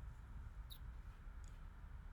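Quiet room tone with a low hum, and two faint, short clicks about three-quarters of a second apart.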